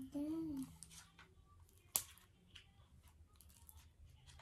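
Faint rustling and small clicks of a card pack's packaging being picked at and torn open by hand, with one sharper click about two seconds in.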